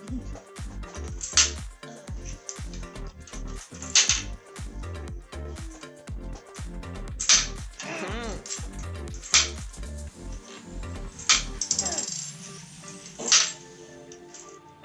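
Plastic Connect 4 discs clacking as they are dropped into the grid, about six sharp clacks a couple of seconds apart, over background music.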